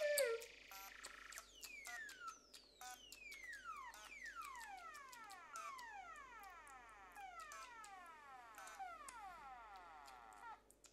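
A string of whistle-like falling tones, many overlapping, each sliding down over a second or two, with scattered clicks. The loudest moment is a brief falling tone right at the start.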